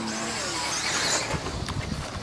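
Electric radio-controlled truck driving on a dirt track: its motor and tyres on loose dirt make a steady hissing whir that is loudest in the first half, with a low rumble in the second half.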